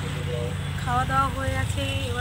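A woman talking over a steady low rumble of road traffic.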